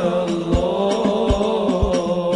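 Islamic devotional song (sholawat) sung by male voices in a long, gliding melodic line, over steady low strokes of hadroh frame drums.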